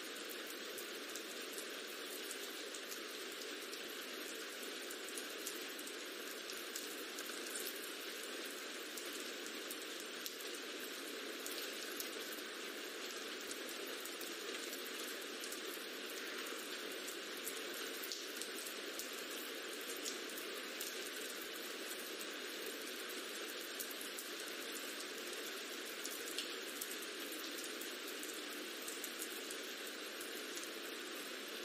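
Recorded rain ambience: a steady hiss of falling rain with scattered faint drop ticks, thin in the low end.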